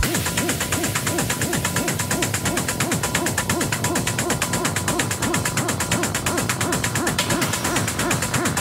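Techno track in a breakdown: the kick drum and deep bass drop out at the start, leaving fast ticking hi-hats over a hooting synth note that repeatedly swells up and falls back, about twice a second.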